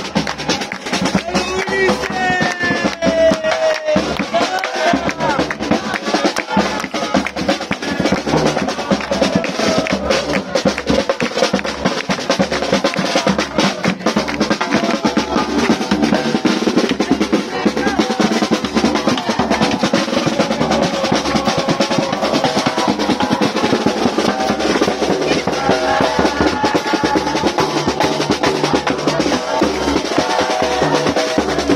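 Uruguayan murga drum section, bass drum and snare drum, playing a loud, steady carnival beat.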